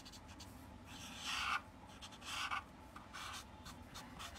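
Felt-tip marker stroking on paper, in three short spells of scratching strokes, the loudest about a second in.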